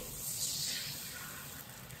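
Water poured into a hot, oiled wok, hissing and sizzling as it hits the oil; the hiss slowly dies down.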